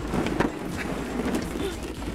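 Hollow plastic ball-pit balls rattling and clattering in a plastic shell pit as people sit down into it, a dense patter of many small clicks.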